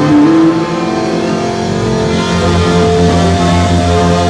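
A ska band playing live, its horn section of saxophones, trumpet and trombone blowing held notes together over the band. A low note enters and holds strongly from about halfway through.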